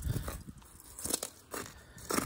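A boot kicking and crunching through ice built up under a dripping outdoor faucet, the ice cracking apart in a crunch at the start and another about a second in. The crunching is satisfying to hear.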